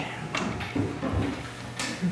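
Scattered small clicks and knocks of children handling slates and chalk at wooden desks, with a dull thump a little after a second in.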